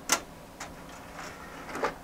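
LG computer optical drive tray being loaded with a disc and closed: a sharp click just after the start, a fainter one about half a second in, and a louder clunk near the end.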